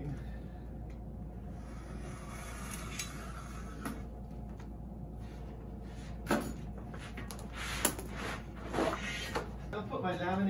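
Handling noises from the laminate roll on its double roller and the sign table: a few scattered knocks and rustles over a steady low hum, which cuts off just before the end.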